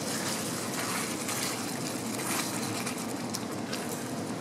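Chicken tikka masala sauce simmering in a stainless steel frying pan, a steady bubbling hiss, as cream is poured in and stirred with a spatula.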